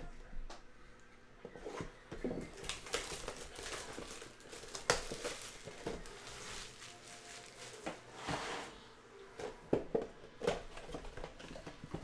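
Plastic shrink wrap being torn and peeled off a sealed cardboard box, crinkling in irregular bursts.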